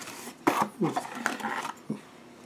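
Packaging rustling with a few sharp clicks and taps as a cardboard mailer box is opened and its contents handled.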